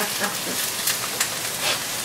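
Ground beef sizzling as it browns in a frying pan on the stove: a steady frying hiss, with a few light clicks from the tongs and pan lid.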